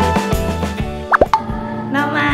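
Background music that thins out about a second in, followed by a quick pair of rising 'bloop' sound effects.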